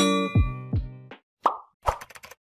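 A short end-screen jingle: sustained chords over low plucked notes that fade out about a second in, followed by two short sound effects from the animated subscribe button.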